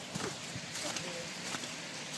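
Footsteps in wet, slushy snow, several steps in a row.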